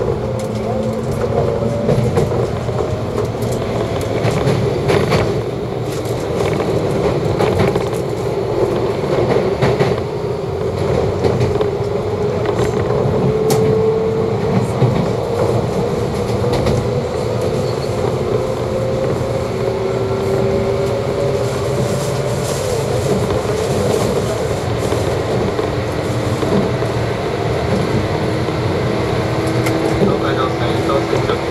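Running noise heard inside a JR East 185 series electric train: the rumble of wheels on rail with scattered rail-joint clicks, under a whine that rises slowly in pitch as the train gathers speed.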